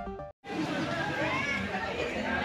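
The tail of a news programme's electronic theme music breaks off a third of a second in; after a brief gap comes the chatter of several people talking at once.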